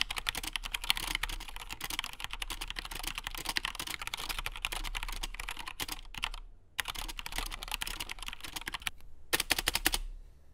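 Fast typing on an Anne Pro 60% mechanical keyboard with Gateron Red linear switches: a dense run of key clacks that pauses briefly about six and a half seconds in and again near nine seconds. The stabilised keys, above all the spacebar, are loud and rattly, a sign of loose Cherry-style stabilisers.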